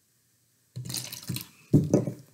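Water poured from a small measuring cup into a clear plastic bottle, splashing in about a second in, with a louder burst near the end.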